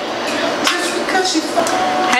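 Women's voices with no clear words, dense and overlapping.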